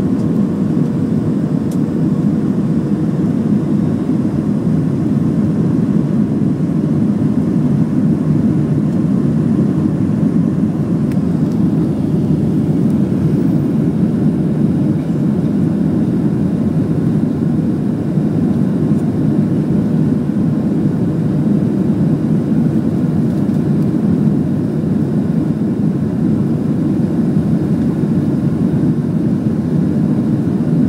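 Jet airliner cabin noise on final approach with the flaps extended: a steady low rumble of engines and airflow, with a faint steady hum above it.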